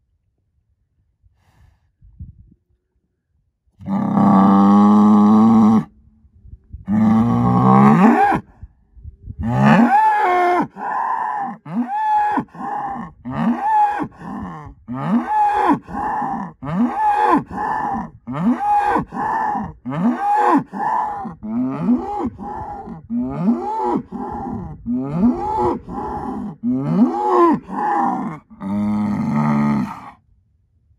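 Black Angus bull bellowing: two long calls, then a rapid run of short calls, each rising and falling in pitch, about three every two seconds, ending in a longer call.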